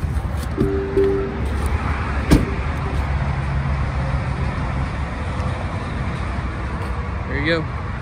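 A car's warning chime sounds briefly, then a door shuts with a single sharp thud about two seconds in. After that comes steady outdoor background noise with road traffic.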